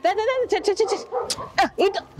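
A woman talking to a young calf in short, quick, high-pitched phrases.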